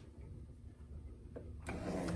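Align AL-200S milling-machine power feed, fitted with a new nylon drive gear, starting up: a click about one and a half seconds in, then its motor settles into a steady hum.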